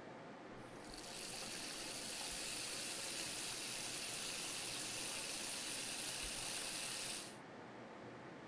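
Water running from a washroom sink tap into the basin, turned on about half a second in and cut off suddenly near the end.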